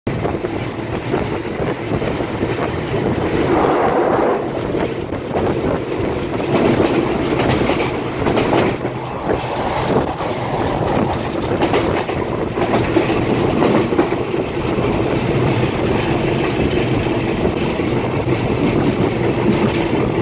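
Thai passenger train running along the track, heard from inside a moving carriage: a steady rumble with the wheels clattering over rail joints.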